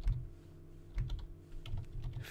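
Computer keyboard keys clicking as someone types a few keystrokes, with a short pause in the first second and more keystrokes near the end, over a faint steady hum.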